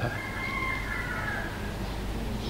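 A pause in a lecture recording. A steady low hum and hiss of an old recording carry on, with a faint, slightly wavering thin tone held for most of the pause.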